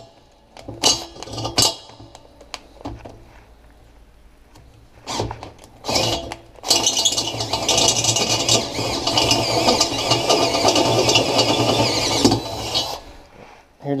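Cordless drill boring a hole through the steel wall of a tank: a few knocks and short trigger bursts, then about six seconds of steady drilling with the bit grinding through the metal, stopping abruptly near the end.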